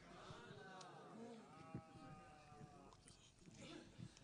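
Near silence with a faint, distant voice holding a few long, wavering notes.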